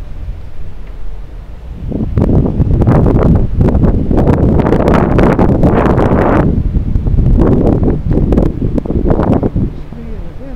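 Wind buffeting the microphone of a bicycle-mounted camera while riding, a low rumble that turns loud and gusty with crackling about two seconds in and drops back just before the end.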